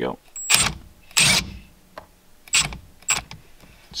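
Cordless impact driver running a steering column nut down in about four short bursts, tightening it onto the splines through a short hub.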